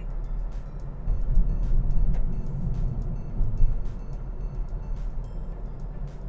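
Low rumble of a car driving, heard from inside the cabin, louder between about one and four seconds in. Background music with a light, regular beat plays over it.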